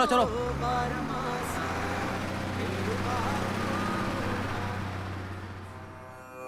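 A bus engine running with a steady low drone, under faint crowd voices, fading out near the end.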